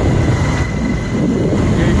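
Wind buffeting a phone microphone on a moving motorcycle, over the motorcycle's engine and road noise: a loud, steady rushing.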